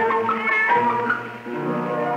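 Music from a 1960s Telugu film song: a melody of held notes over accompaniment.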